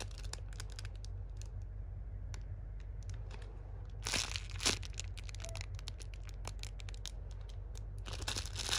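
A thin plastic bag crinkling in a hand as a foam squishy toy is squeezed through it: scattered soft crackles, with a louder cluster about halfway through. A steady low hum runs underneath.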